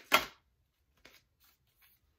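Tarot cards being shuffled by hand: one loud, brief rustle of cards right at the start, then a few faint card ticks.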